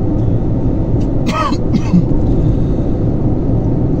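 Steady rumble of road and engine noise inside a moving car's cabin, with a short vocal sound about a second and a half in.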